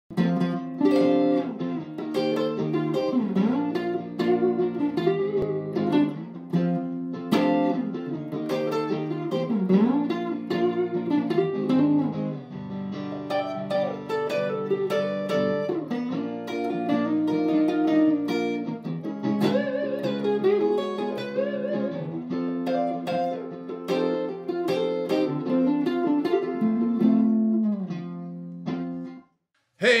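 Grosh Retro Classic Custom, a Strat-style electric guitar with three single-coil pickups, played through an amplifier: a continuous improvised run of single notes and chords with pitch bends. The playing stops about a second before the end.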